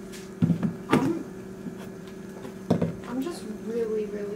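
Old refrigerator running with a steady low hum. Three sharp knocks sound over it, about half a second in, about a second in and near three seconds.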